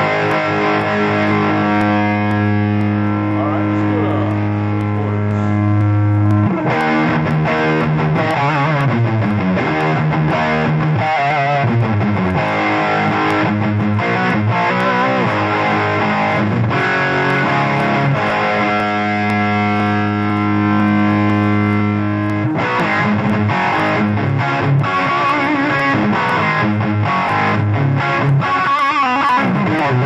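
Overdriven electric guitar through a homemade FET-based Marshall Plexi-style distortion pedal, the gain turned up from halfway toward full. A long ringing chord is held for about six seconds at the start and again near the middle, with quicker riffs and changing notes between and after.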